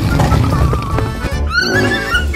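Upbeat background music with a steady beat. About one and a half seconds in, a horse whinny sound effect cuts in as a wavering, falling high cry.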